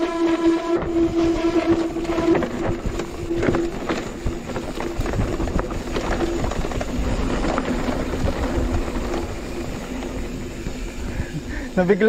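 Mountain bike rolling over rough dirt singletrack: the rear freehub buzzes steadily while coasting, its pitch dropping a step about a third of the way in, over tyre rumble and frequent small knocks and rattles from the bumpy trail.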